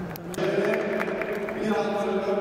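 A man's voice sets in about half a second in, holding long, steady pitches, after a couple of brief clicks.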